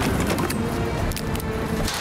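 Background music with a held note and a few sharp knocks.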